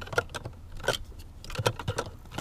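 Plastic clicks and knocks of a coding cable's OBD plug being fitted into the car's OBD port under the dashboard, several separate sharp clicks across two seconds.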